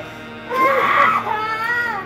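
A loud crying wail over soft background music, starting about half a second in and falling away near the end.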